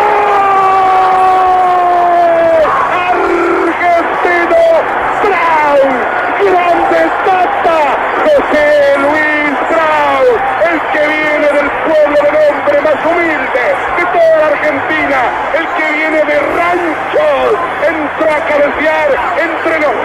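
Excited Spanish-language radio football commentary over a stadium crowd: a long, drawn-out goal shout that slowly falls in pitch over the first couple of seconds, then rapid shouted commentary. The sound is thin, with no highs, as on an old broadcast recording.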